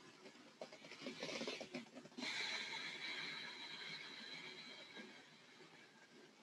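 A woman's deep breath: a soft inhale about a second in, then a long audible exhale through the mouth that starts abruptly about two seconds in and fades away over roughly three seconds.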